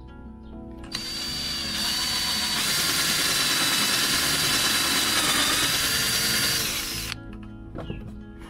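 Cordless drill running for about six seconds as its bit bores through a hard black Kydex plastic sheet, with a steady high motor whine. It starts abruptly about a second in and cuts off near the end.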